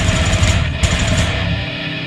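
Live metal band playing: distorted electric guitars, bass and drums at full volume. About three-quarters of the way in the drums and low end cut out, leaving held tones ringing.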